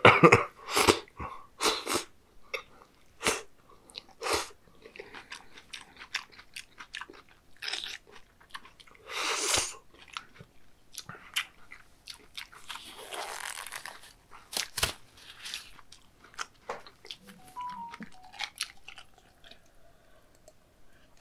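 Close-miked ASMR eating sounds: wet smacking and slurping as the last of the sauce-coated raw beef and noodles is eaten off a wooden board, followed by chewing. The strokes are quick and loudest in the first few seconds, then come more sparsely.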